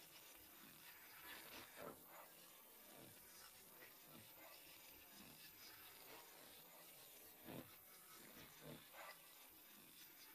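Near silence: a faint steady hiss with a few soft, short noises scattered through it.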